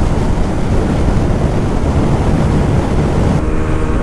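TVS Apache 160 single-cylinder motorcycle held flat out at about 120 km/h, its engine buried under heavy wind rush on the on-board microphone. About three and a half seconds in, the wind drops back and the engine's steady note comes through clearly.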